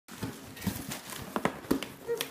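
Cardboard box being handled by hand, giving a half-dozen irregular knocks and taps with light scraping, loudest near the end.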